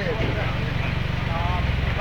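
Toyota Land Cruiser 4x4's engine running under load as it crawls up a steep, muddy dirt slope: a steady low rumble with an even pulse.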